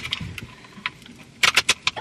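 Paper Christmas cracker being tugged between two people's hands: its crêpe-paper wrapper crinkles with scattered crackles, and a quick run of sharp clicks comes near the end as it strains before the snap.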